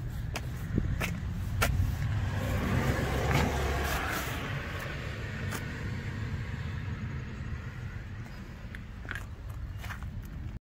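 A steady low engine rumble that swells for a couple of seconds a few seconds in, with a few sharp clicks scattered through it.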